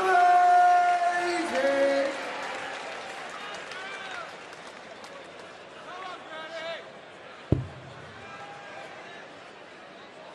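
Darts caller announcing a maximum, "one hundred and eighty", with the last word drawn out long and falling in pitch, over a cheering arena crowd whose noise then dies down. About 7.5 seconds in comes a single sharp thud of a steel-tip dart striking the bristle board.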